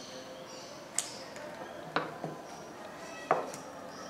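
Scissors snipping paper: a few sharp clicks, roughly a second apart.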